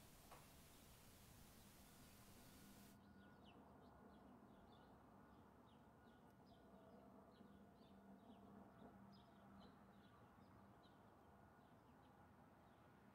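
Near silence with faint birds chirping: many short, quick chirps repeating from about three seconds in, over a faint low hum.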